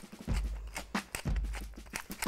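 A hand-twisted pepper mill grinding peppercorns, giving a quick, irregular run of crunching clicks.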